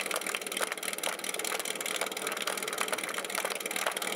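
Small engine idling steadily with a constant low hum, most likely the team's portable fire pump running at idle while the team holds at the start line.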